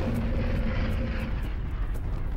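Drone of a propeller aircraft engine over a deep, steady rumble; the engine's tone drops out about two-thirds of the way in.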